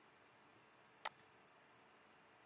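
A single computer mouse click about a second in, a sharp press followed closely by a fainter second tick, against near silence.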